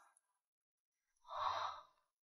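A woman's single short, breathy sigh about a second and a half in, after a moment of silence.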